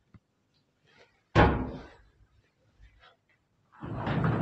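A door banging shut once, about a second in, a sharp loud bang that dies away within half a second. Just before the end a longer, louder rush of noise begins.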